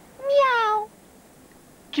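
A single cat meow, about two-thirds of a second long and falling slightly in pitch, voiced for a cartoon cat.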